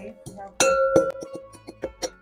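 Metal pestle pounding in a metal mortar, grinding incense ingredients to a coarse powder. One hard strike about half a second in rings like a bell, followed by several lighter knocks.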